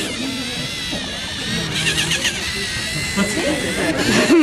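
Small electric motors of LEGO Mindstorms sumo robots whining steadily as the two robots push against each other. Spectators' voices chatter throughout, with a brief high-pitched voice about two seconds in.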